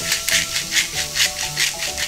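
Handheld pepper mill grinding black pepper in quick repeated turns, about five gritty strokes a second, over background music.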